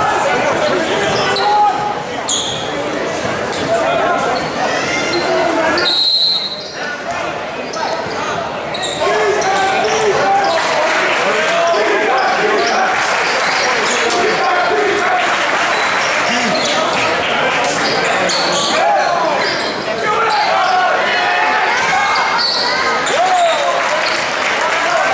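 Basketball dribbled on a hardwood gym floor during play, with indistinct voices of players and spectators calling out, echoing in a large gymnasium.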